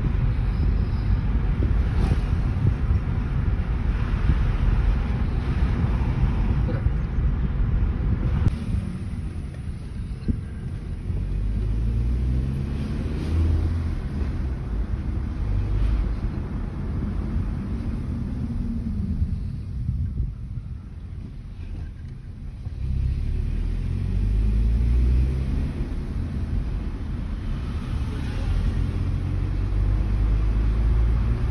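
Hyundai i20 driving: steady road and wind noise in the first several seconds. Then the engine's hum rises in pitch several times as the car accelerates, with dips in between.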